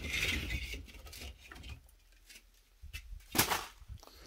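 Split firewood being pulled from a stacked woodpile: wood scraping and rustling against wood, then one sharp wooden knock near the end.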